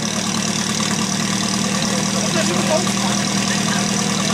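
Portable fire pump's engine running steadily during a firefighting-sport attack, a constant even hum.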